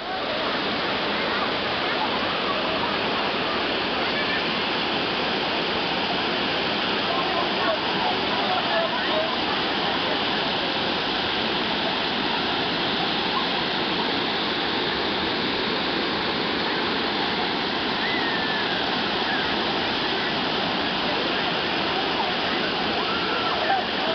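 Waterfall rushing steadily over rocks into a pool, a loud, unbroken wash of water noise. Faint voices of people in the water come through it now and then.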